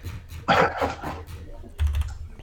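A man's cough about half a second in, followed by a brief low thump near the end.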